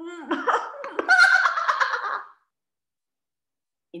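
A woman acting out laughter she is trying to hold in: a hum through closed lips breaks into a spluttering burst, then loud ha-ha-ha laughter that stops about two seconds in.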